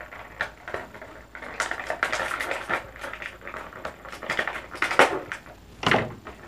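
Plastic toy packaging being handled: crackling and irregular clicks as a small plastic figure is worked free of its plastic ties and packing. The loudest snaps come about five seconds in and at the end.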